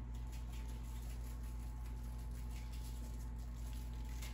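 Grated Parmesan shaken from a shaker can onto a sheet pan of cauliflower: a faint patter of light ticks over a steady low hum.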